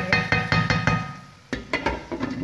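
Glass pan lid with a metal rim set down on a nonstick pan, clinking and rattling against the rim with short ringing tones. It comes in two clusters of strikes, one at the start and a second about a second and a half in.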